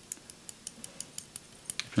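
A quick, irregular run of faint metallic clicks from a folding knife jiggled in the hand: a loose screw is rattling in its handle.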